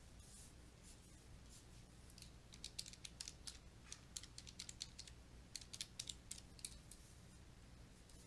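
Light, quick clicks of calculator keys being pressed, a run of a couple of dozen starting about two seconds in and stopping near seven seconds, over a faint steady hum.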